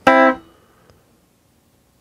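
Electric guitar chord, fifth-fret notes on the G and B strings, strummed once near the start and cut short by muting after about half a second.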